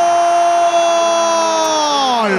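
Football commentator's long held goal cry, one sustained 'gol' on a single high pitch that slides downward near the end.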